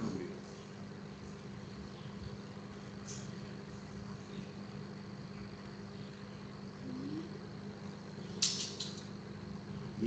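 Quiet room tone with a steady low electrical hum, broken by a brief hiss about eight and a half seconds in.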